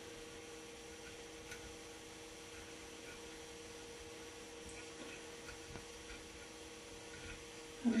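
Steady electrical hum at a low level, with a few faint small clicks of hands handling the wooden flyer of a spinning wheel while tying yarn onto its arm.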